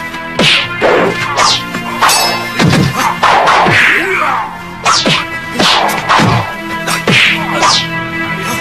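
Dubbed fight-scene sound effects: a quick run of whooshing weapon swings and whacking blows, about a dozen in all, over background music with sustained tones.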